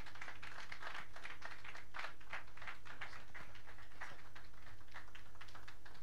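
Audience applauding, with individual hand claps that can be picked out in a steady run.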